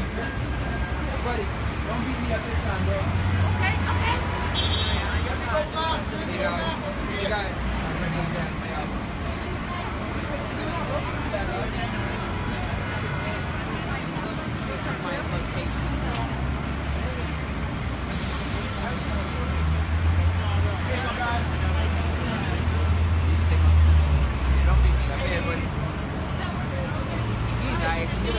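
Busy city street: traffic running past with a low engine rumble that swells about three seconds in and again near the end, under the chatter of passers-by.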